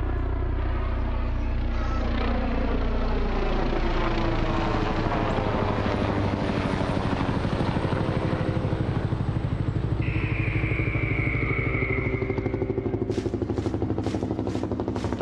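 Recorded helicopter sound effect played through the concert PA: a steady, fast rotor chop with a high whine from about ten seconds in that falls slightly in pitch for a few seconds. Near the end come sharp rotor beats about three a second.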